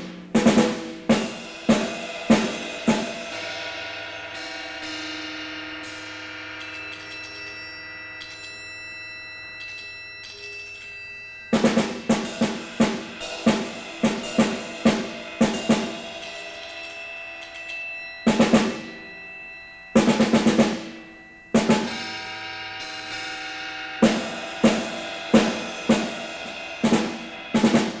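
Solo percussion music: drums struck in quick groups and short rolls, each strike dying away into long ringing tones. After the first few seconds the strikes stop and the ringing hangs for several seconds, then bursts of strikes and rolls start again.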